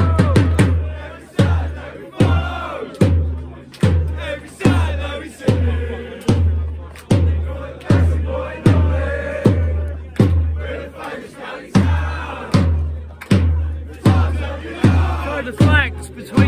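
A fast roll of drum hits that ends just after the start, then a bass drum beaten steadily about once every 0.8 seconds while a group of supporters chants along.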